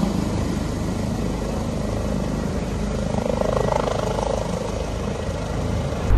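Medical helicopter hovering nearby, its rotor and turbine making a steady, loud drone.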